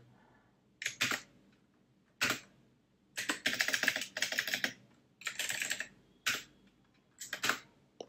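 Typing on a computer keyboard in short bursts of keystrokes with near-silent pauses between them, the longest run about three to five seconds in.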